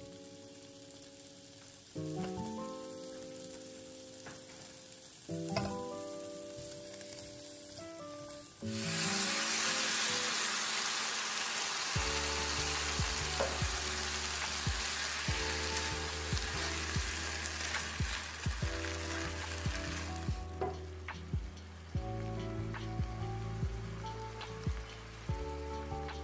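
Vegan meatballs and bell pepper strips frying in a pan with a faint sizzle, over background music. About nine seconds in, a sudden loud sizzling hiss starts as sifted tomatoes hit the hot pan; it lasts about eleven seconds, then settles to a steady simmering sizzle with light clicks.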